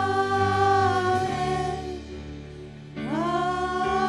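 Live worship music: women's voices sing a long held "amen" over sustained band chords. The voices fall away after about a second, then swoop up into another held note near the end.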